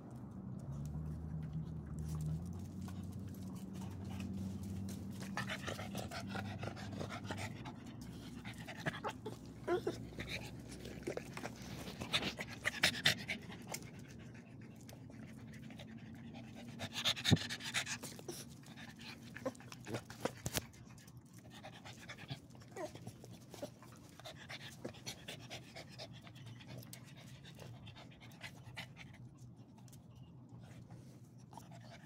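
Dog panting close to the microphone, with scattered clicks and rustles as it noses against the phone.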